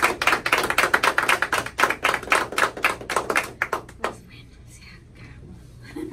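A small group of people applauding: a few seconds of dense hand-clapping that thins out and dies away about four seconds in.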